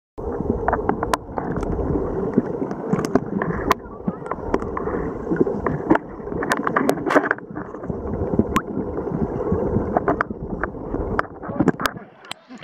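Muffled underwater sound picked up by a camera in a waterproof housing while snorkelling: water sloshing and bubbling against the housing, with many scattered sharp clicks. It begins just after the start out of silence and grows thinner near the end as the camera reaches the surface.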